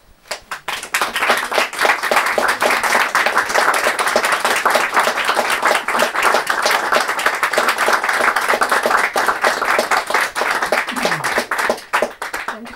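A small audience applauding with hand claps just after a song ends. The clapping swells within the first second, holds steady, and thins out shortly before the end.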